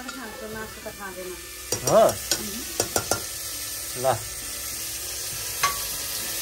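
Mutton pieces frying and sizzling in an aluminium pressure cooker while a metal ladle stirs them, with a run of sharp clinks of the ladle against the pot about two to three seconds in.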